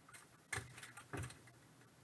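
A few light clicks and clacks of thick hard-plastic trading-card holders being handled and set down, the sharpest about half a second in and another a little after a second.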